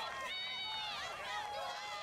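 Several voices shouting and calling out at once on a football field as a play starts at the snap.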